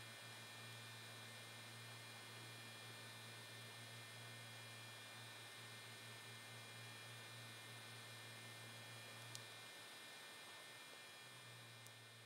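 Near silence: a faint steady electrical hum over hiss, dropping out briefly near the end, with one faint tick about nine seconds in.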